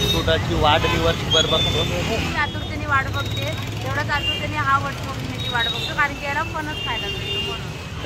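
Voices talking over a steady low rumble of road traffic.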